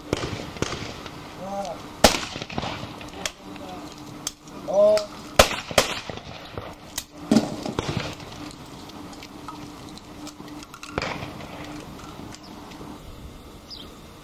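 Shotgun shots on a trap-shooting line: sharp cracks at irregular intervals, mostly in the first half, the loudest about two seconds and five and a half seconds in. Short shouted calls come between the shots.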